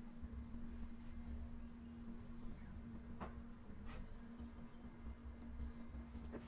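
Quiet room tone: a faint steady electrical hum, with two faint ticks a little past the middle.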